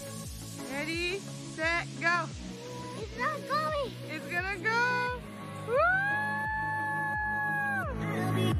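A child's high-pitched excited shouts and squeals, ending in one long held yell, over electronic dance music with a steady beat.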